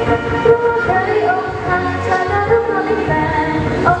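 A female voice singing a melody into a handheld microphone over an amplified backing track.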